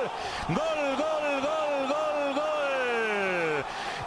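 Spanish-language TV football commentator's drawn-out goal cry: a run of high, shouted 'gol's about two a second, ending in one long falling note near the end, over stadium crowd noise.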